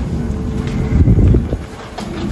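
Low rumbling noise of a jet bridge at a parked airliner, with a faint steady machine hum. It swells about a second in and drops off near the end.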